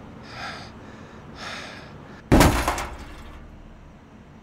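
A heavy body blow against a steel door in a corrugated-metal wall, one loud booming impact about two and a half seconds in that rings on for about a second, after two short, soft breathy sounds.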